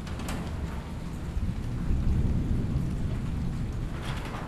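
Recorded rain falling steadily, with a low rumble of thunder that swells to its loudest about halfway through and then eases.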